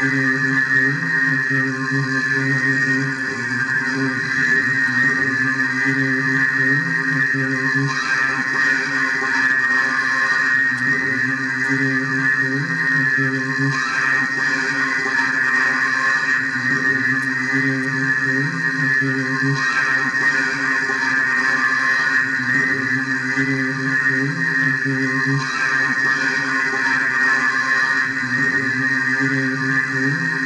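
Electroacoustic sound poetry: a voice layered on itself through a tape-loop machine and a reverberation chamber into a dense, steady drone of many held pitches, with a low swell that recurs every few seconds.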